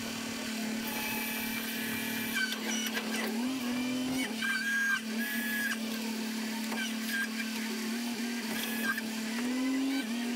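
Hydraulic knuckle-boom grapple loader running: its engine hums at a steady pitch that rises briefly twice as the hydraulics take load while the grapple is swung and lifted. Short high whines come and go over it.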